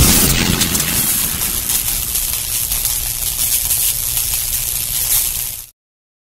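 Intro sound effect: a deep hit, then a loud hissing rush that slowly fades and cuts off suddenly near the end, followed by silence.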